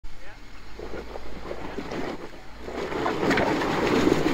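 Jeep Wrangler Rubicon's engine running as the Jeep crawls over wet rocks, getting louder about three seconds in, with voices in the background.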